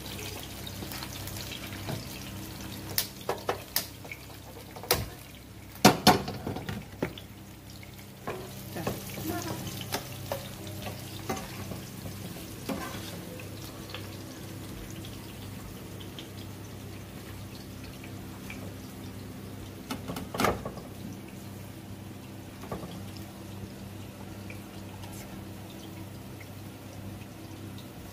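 Oil frying faintly in a pan on a gas stove over a steady hum, with a few sharp clinks of utensils. The loudest clinks come about six seconds in, and another about twenty seconds in.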